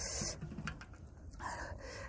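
A woman breathing out hard through her mouth twice, breathy panting against the burn of spicy chilli sambal, with a few faint clicks between.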